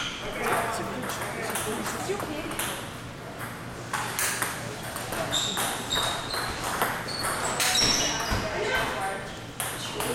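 Table tennis balls clicking sharply against bats, tables and floor at irregular moments, with voices in the background.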